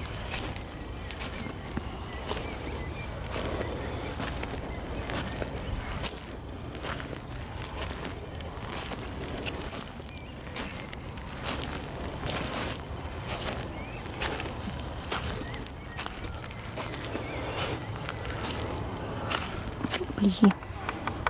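Footsteps crunching on a shingle pebble beach at a steady walking pace, about one step every two-thirds of a second, over a steady low rumble.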